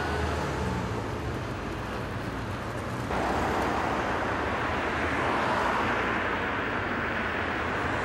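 Steady outdoor traffic noise from passing road vehicles. About three seconds in the sound changes to a brighter, fuller hiss.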